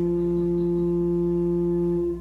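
Church organ holding one steady low note with its octave above, sounding as a plain pure tone.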